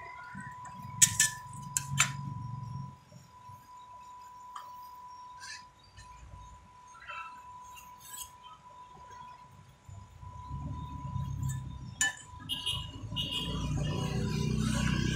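Metal spatulas clinking against a steel cold-plate pan, several sharp ringing clinks about a second or two in and another near the end, and a flat steel scraper scraping across the pan as it rolls frozen ice cream into rolls.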